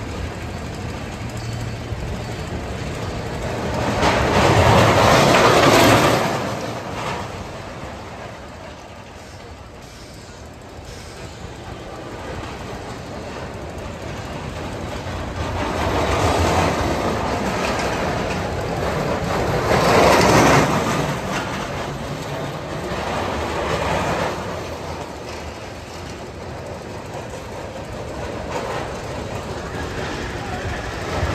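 A Jet Star-model steel roller coaster car running on its steel track, its wheels rumbling and clattering as it swells and fades past. It passes loudest twice, about five seconds in and again about twenty seconds in, with smaller passes in between.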